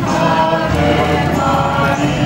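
A choir singing a sustained, slow hymn as a serenade to the procession's image, with steady low notes beneath the voices.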